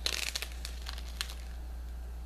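Clear plastic bag crinkling as it is handled: a quick run of crackles in the first half second and a few more about a second in, then only a low steady hum.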